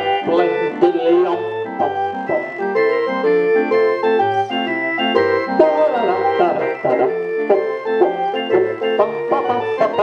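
Small street barrel organ playing a jaunty tune while its crank is turned, with bass notes changing about twice a second beneath a reedy melody.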